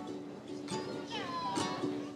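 Ukulele strummed in a steady rhythm, with a brief high gliding vocal sound about a second in.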